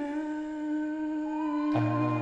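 A male lead singer holding a long sung "na" on one steady note. Near the end a low bass note and further harmony parts come in under him.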